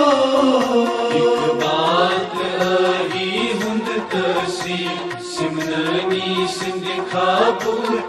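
College anthem (tarana) music: a voice singing a melody over instrumental backing with a steady beat.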